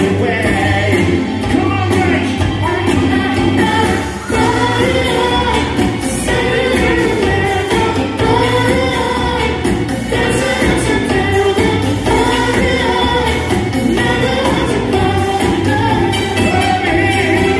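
A male singer singing into a microphone over a loud dance-pop backing track with a steady beat, played through a hall's sound system.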